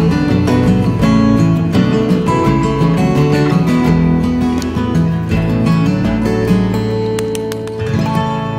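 Background music played on plucked acoustic guitar, a steady run of notes.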